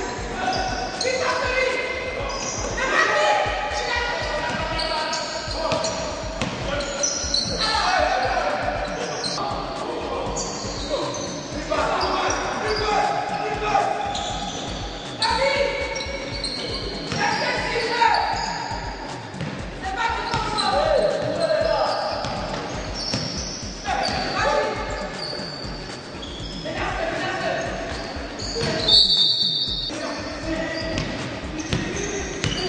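Basketballs bouncing on a wooden court during a practice drill, with voices calling out over them in a large gymnasium.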